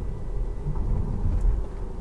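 Low, steady tyre and road rumble inside the cabin of a 2019 Tesla Model 3, an electric car with no engine note, cruising at around 30 mph.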